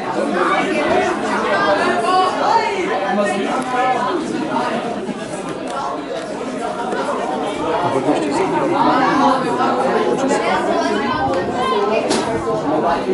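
Several spectators chatting close by, their voices overlapping into indistinct talk.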